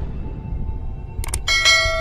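Outro jingle over the end card: a low rumble under a couple of quick clicks, then a bright bell-like chime about one and a half seconds in that rings on.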